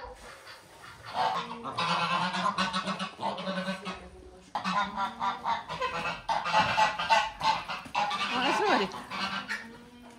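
A flock of domestic geese honking loudly, many calls overlapping in two long runs with a brief lull about four seconds in.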